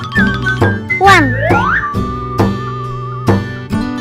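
Light background music with plucked, guitar-like notes over a steady beat. About a second in, a swooping sound effect slides down and back up in pitch, followed by a held, wavering melody note.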